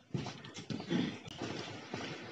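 Footsteps on a concrete lane, a short scuff or tap about every half second, with one louder, slightly longer sound about a second in.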